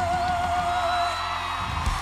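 A female singer holds the song's final long note with vibrato over the band's sustained chord; the note ends about halfway through, whoops from the audience rise, and the band closes with a final hit near the end.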